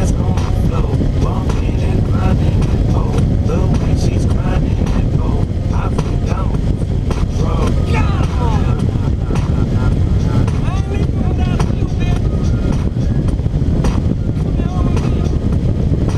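Motorcycle riding along at road speed: a steady, loud rumble of engine and wind noise on the camera microphone.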